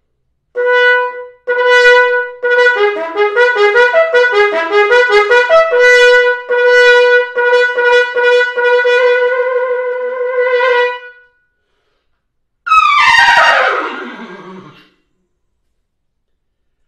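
Trumpet played solo: two held notes, a quicker run of notes, then a long held note that ends about eleven seconds in. A moment later one loud note slides steeply down in pitch over about two seconds.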